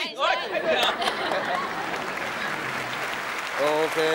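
Studio audience applauding steadily for about three seconds, with voices over the first second and a voice coming back in near the end.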